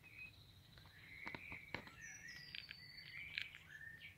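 Faint birdsong: short whistled phrases, with a long high whistle about two seconds in and a few light clicks.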